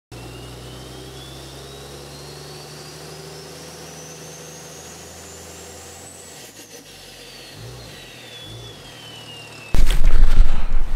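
Sound effects for an animated logo intro: a steady low drone with a thin high whistle that rises slowly for about six seconds, then falls again. Near the end a sudden loud rumble of microphone handling noise cuts in.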